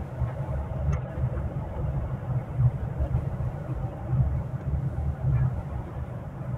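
Manual car driving slowly in third gear, heard from inside the cabin: a steady low rumble of engine and road that rises and falls unevenly.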